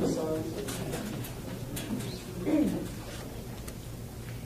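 Hushed room with a standing crowd: a voice trails off at the start, then faint clicks and rustles over a low hum, with one short falling sound about two and a half seconds in.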